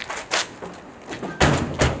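The two hinged rear doors of a Peugeot van slammed shut one after the other, two heavy thuds less than half a second apart about a second and a half in, after a lighter knock.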